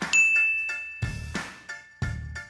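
A single high-pitched ding sound effect, held for about a second, over background music with a steady beat.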